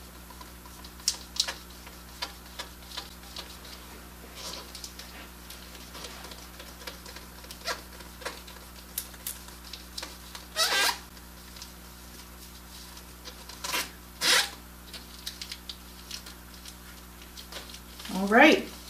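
Fingers rubbing and pressing the transfer sheet of tire letters onto a rubber tire sidewall: scattered light taps and scrapes, with two longer, louder rubbing strokes about ten and fourteen seconds in. A steady low hum runs underneath.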